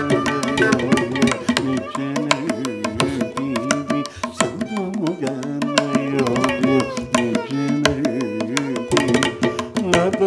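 Carnatic percussion passage: a morsing (South Indian jaw harp) twanging on a fixed pitch, its overtones shifting as the player's mouth changes shape, over dense, fast mridangam and ghatam strokes.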